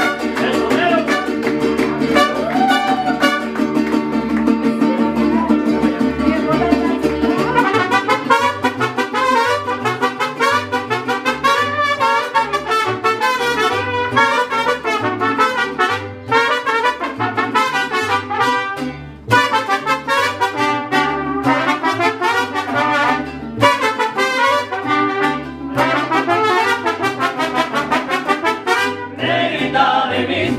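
Mariachi band playing the instrumental introduction of a song, with trumpets leading over guitars and a stepping bass line. Held notes open it, and quick runs follow from about a quarter of the way in.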